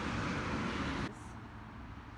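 Steady outdoor traffic noise, a hiss-and-rumble haze from a nearby road, with no voices. It drops suddenly to a quieter background about a second in.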